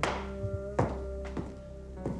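Background drama score: sustained low notes with sharp percussive hits landing about every 0.8 s.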